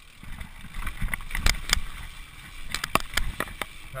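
Mountain bike ridden over a rough, rutted dirt trail: the tyres rumble on the dirt, and the bike rattles and clicks sharply over the bumps, most thickly in the second half.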